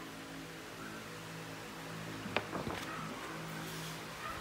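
Faint, steady low hum of a running motor, with a single light tap about two and a half seconds in.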